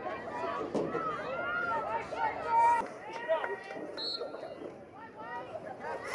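Several spectators' voices talking over one another in the stands, the words indistinct.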